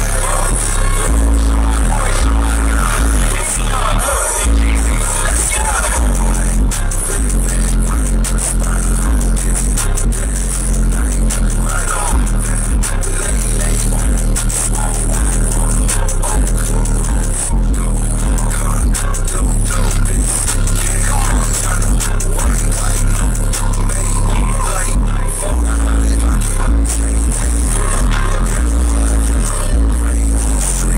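Bass-heavy music played loud through a car audio system's four Sundown Audio SA-10 10-inch subwoofers, heard inside the truck's cab. Deep bass notes step up and down under the track.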